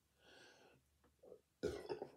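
A woman's faint, stifled burp, muffled behind her hand.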